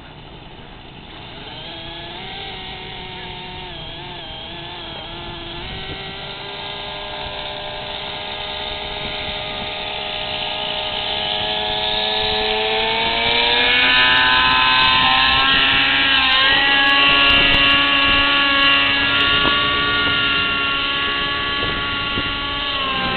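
Align T-Rex 600 radio-controlled helicopter spooling up: its motor-and-rotor whine rises steadily in pitch and grows louder over about the first dozen seconds, then holds a steady, loud pitch at flying speed as the helicopter lifts off.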